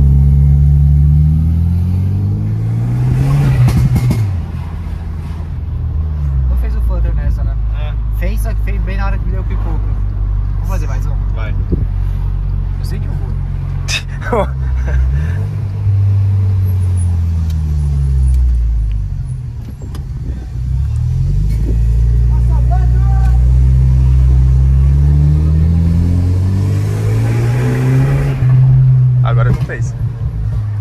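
VW Jetta TSI's turbocharged four-cylinder engine heard from inside the cabin while driving, accelerating and easing off several times, its pitch climbing and dropping with the gear changes.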